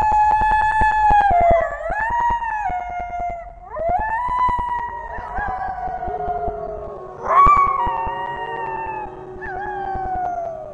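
Wolves howling: a long howl held at one pitch, then howls that rise and fall, with several voices overlapping from about halfway and a higher howl breaking in past the middle. A fine crackle runs behind the first few seconds.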